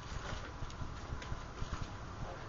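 Faint footsteps: a few soft, irregular knocks over steady room hiss.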